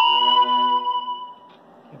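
A single strike of the longcase clock's bell, a sudden ringing chime with several tones that fades out over about a second and a half.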